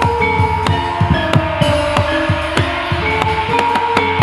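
Live gamelan-style ensemble playing: metallophone notes ring and hold over a quick run of drum strokes whose pitch drops on each hit, several a second, with sharp percussive clicks on top.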